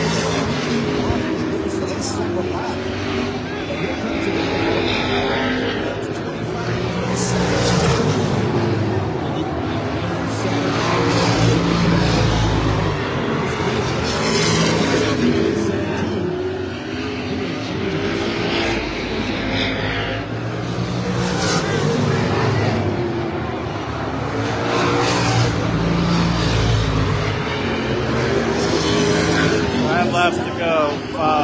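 A pack of Limited Late Model stock cars racing on a short oval track at full throttle. The engine sound swells and fades again and again as the cars come past and move away.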